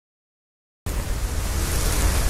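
Silence, then a little under a second in, a loud rushing noise with a deep rumble underneath cuts in suddenly and holds steady: a trailer sound-design effect for the production logo.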